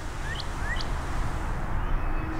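Two short rising bird chirps in the first second, over a steady rushing hiss of falling fountain water.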